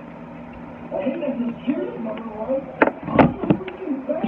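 A clear diamond-shaped trinket tapped and handled as an ASMR trigger: about three seconds in, four sharp taps and knocks in quick succession, the second with a dull thud. A low voice murmurs just before the taps.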